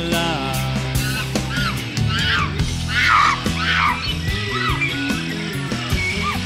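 Instrumental break of a rock song: a band accompaniment with a lead part of short notes that bend up and then down, strongest in the middle of the break.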